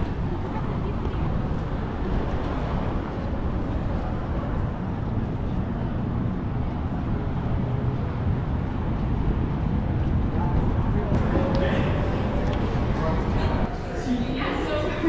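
Indistinct chatter of museum visitors over a steady low background hum in a large stone-walled hall; no clear words stand out, and a few voices come a little closer near the end.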